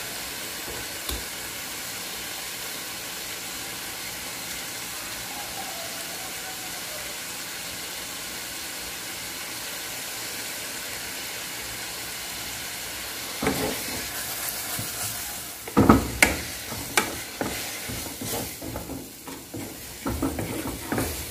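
Vegetables sizzling steadily in a frying pan. About thirteen seconds in, a wooden spatula starts stirring them, with irregular scraping and knocks against the pan.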